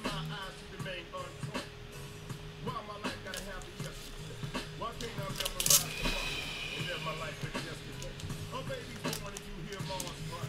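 Background music with faint vocals playing quietly. About halfway through there is one short crinkle of a clear plastic card sleeve being handled.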